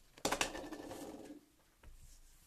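A sheet of green cardstock handled and set down on the table: a quick burst of paper crackle about a quarter second in, then about a second of lower continuous rustling before it goes quiet.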